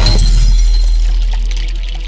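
Channel-logo sting sound effect: a deep boom with a crackling, glassy shattering layer on top, slowly fading away.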